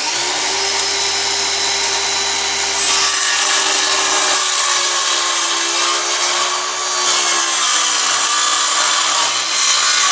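Cordless DeWalt circular saw running at full speed and ripping lengthwise through a glued-up hardwood cutting-board panel. It gets louder about three seconds in, and the motor's pitch sags a little under load partway through the cut.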